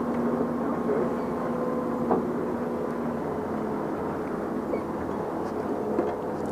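Outboard motors of a sport-fishing boat running steadily under throttle as the boat is brought around, a constant engine hum. Its pitch drops slightly about three seconds in.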